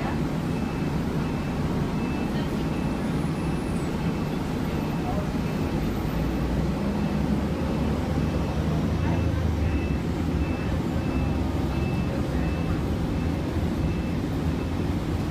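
City transit bus running on the road, heard from inside the cabin: a steady low engine and road rumble that swells somewhat in the middle. A faint high beep repeats about twice a second through most of it.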